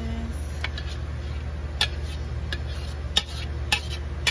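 Long metal spoon knocking and scraping against a mixing bowl and the rim of a stainless steel pan as sautéed mushrooms are tipped into cream sauce: about five sharp clicks, over a steady low hum.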